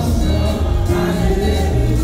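A church congregation singing a gospel song together, over musical accompaniment with a strong, steady bass.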